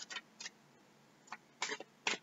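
Goddess Guidance oracle cards being shuffled by hand: a few faint, short clicks as the cards strike one another, unevenly spaced, with a small cluster of them near the end.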